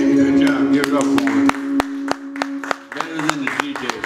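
A male singer holds the last note of a country ballad over its backing music, the note ending about a second and a half in. Scattered audience clapping starts under the note and carries on after it.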